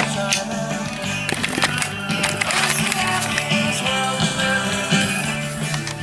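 Pop music with a steady beat and bass line, playing through the speakers of a JVC CD stereo system, streamed from a phone over a Bluetooth receiver.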